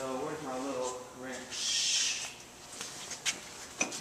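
A man's drawn-out wordless 'uhh' for about a second, then a short hiss, then a couple of light metallic clicks near the end as a wrench is taken up to loosen a nut on a brake lathe.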